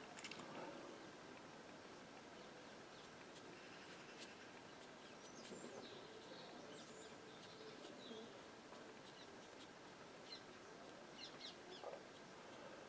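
Near silence: quiet room tone, with a few faint chirps around the middle and a few light ticks near the end.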